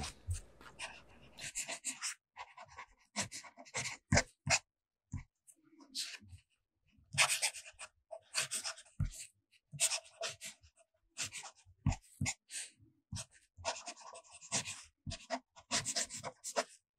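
Fountain pen nib scratching across paper in quick, irregular strokes as cursive is written, with short pauses between words.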